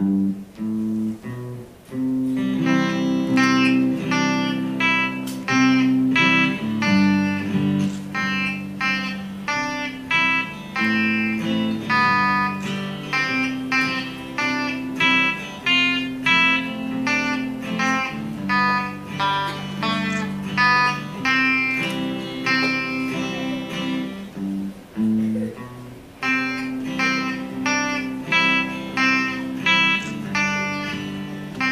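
Two electric guitars playing a duet: a picked single-note melody over held lower notes, with a short break about 25 seconds in.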